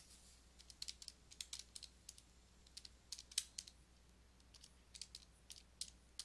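Faint, irregular clicking of keys being pressed, a couple of dozen light taps scattered through, over a faint steady low hum.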